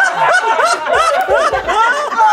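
A group of people laughing, in quick repeated giggles of about four or five a second.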